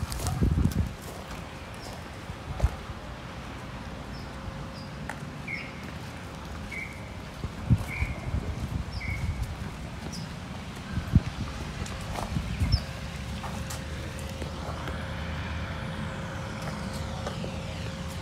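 Outdoor street sound: scattered knocks and short high chirps, then a vehicle passing with a sweeping rush over the last few seconds.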